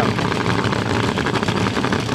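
A drag-racing funny car's engine idling steadily as the car rolls toward the starting line.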